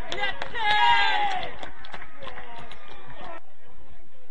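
Men shouting at an outdoor football match: two long, drawn-out calls falling in pitch in the first second and a half, with scattered knocks. Then fainter outdoor noise after a cut at about three and a half seconds.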